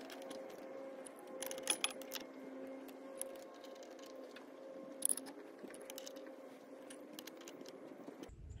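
Adjustable wrench on a brass hose-barb fitting being turned into an outboard engine block: faint scattered metallic clicks and light rattles, with a cluster about a second and a half in and another around five seconds, over a faint steady hum.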